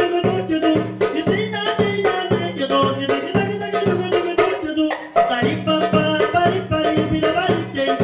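A man singing live into a microphone while playing a darbuka (goblet drum) in a fast, steady rhythm, with a brief dip in loudness about five seconds in.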